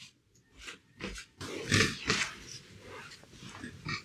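Handling noises of a person settling at a desk and moving objects: a run of irregular rustles and knocks, loudest about two seconds in.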